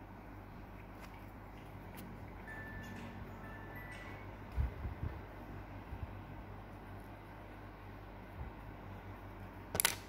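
Handling noise from a small plush toy held right against the phone: a faint steady room hum, soft low bumps about halfway through and a sharp click near the end.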